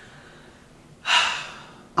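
A man's single sharp, audible breath about a second in, sudden at the start and fading away over most of a second, after a moment of quiet.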